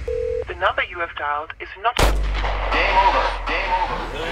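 Hard dance track in a breakdown. A held synth tone gives way to a warbling, pitch-bending vocal-like sample. About halfway through a heavy boom hit lands and leaves a long sub-bass tail under more bending sampled sounds.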